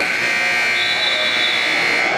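Gym scoreboard buzzer sounding one steady, high tone for about two seconds, marking the end of a wrestling period, over the murmur of the crowd.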